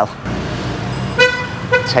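A vehicle horn tooting twice over steady street-traffic noise: one short toot a little past halfway, then a briefer one.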